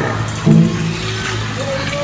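Background music with held low notes.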